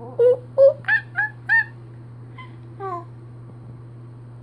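A baby's voice making monkey-imitation 'ooh' hoots: five quick pitched calls in the first second and a half, then two fainter ones.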